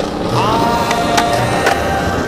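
Skateboard wheels rolling on smooth concrete, with a few sharp clicks from the board about a second in. A song with a held note plays over it.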